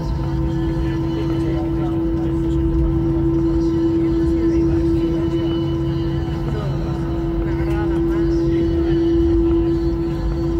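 Airbus A320 cabin noise while taxiing: the IAE V2500 engines running at idle, a steady hum with one unchanging tone over a low rumble.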